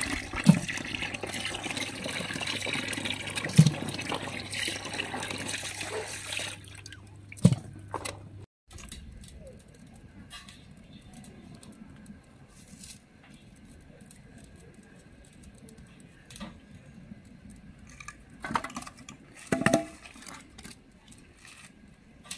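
Tap water running into a plastic basin as hands rinse live loaches, with a few sharp knocks. About eight seconds in this gives way to a much quieter stretch with scattered knocks and clatters while a wood-fired stove is tended.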